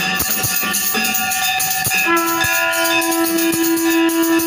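Brass hand bell rung continuously during an aarti, over repeated drum strikes. About two seconds in, a conch shell starts a long, steady blast that holds to the end.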